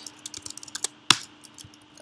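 Keystrokes on a computer keyboard: scattered light key clicks, one noticeably louder about a second in, as the text editor is worked from the keys.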